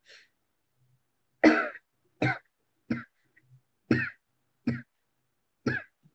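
A woman coughing six times, short single coughs about a second apart, starting about a second and a half in, the first the loudest.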